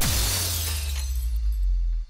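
Shattering sound effect in a logo sting: a sudden crash whose bright, glassy spray fades over about a second, over a deep low rumble that holds and then cuts off suddenly at the end.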